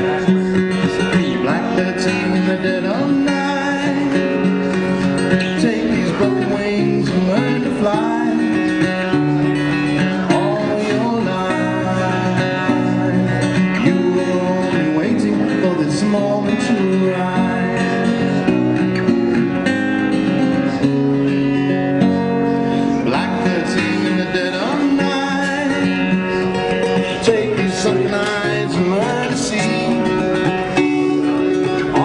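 Live acoustic guitar music, plucked and strummed.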